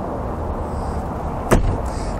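A single sharp thump about one and a half seconds in, over a steady low rumble.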